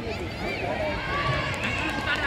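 Several voices of players and onlookers shouting and calling out over one another during a kho kho chase.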